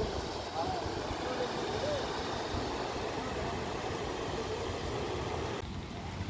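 Steady rush of floodwater pouring through a dam spillway, with faint voices in the first couple of seconds.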